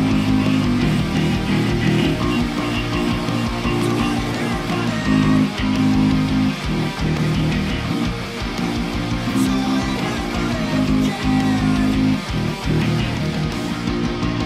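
Five-string electric bass, tuned low (B C G C F), played along with a full band recording of distorted electric guitars and drums in a heavy pop-punk song. Held low bass notes change about once a second.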